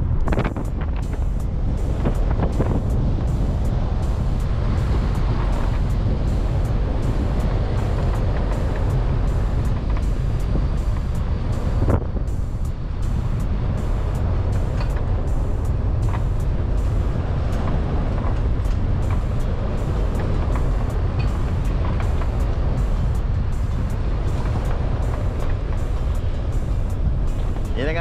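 Steady low rumble of a car's engine and tyres on a paved road, heard from inside the moving car's cabin, with a brief knock about twelve seconds in.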